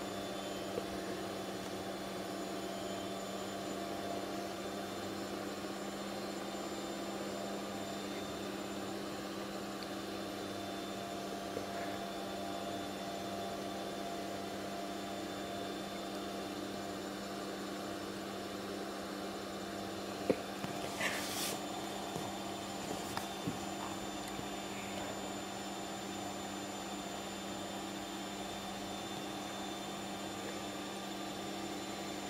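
A steady hum holding several fixed tones, with a few faint clicks and a brief hiss about twenty seconds in.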